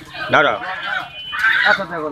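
Desi chickens calling from inside a netted bamboo basket, with a short, loud call about one and a half seconds in.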